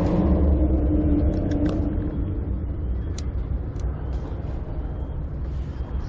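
Low, steady rumble of passing motor traffic, strongest in the first two seconds and then easing, with a few short sharp clicks of fishing tackle being handled.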